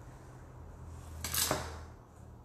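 A single short scraping rustle about a second and a half in, as a plastic rolling pin is moved off the fondant and put down on the silicone work mat, over a low steady hum.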